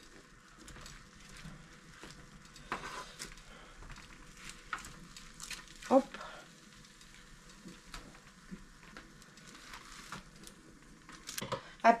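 Roasted bell peppers on a hot baking tray sizzling faintly as they are turned over with tongs, with a few light clicks of the tongs.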